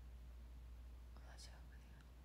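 Near silence: a steady low hum, with one faint whisper about halfway through.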